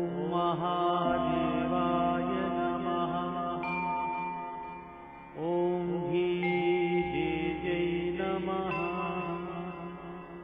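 Devotional mantra chanting set to music, with long sustained notes. One held phrase fades out, then a second swells in about five and a half seconds in and fades again near the end.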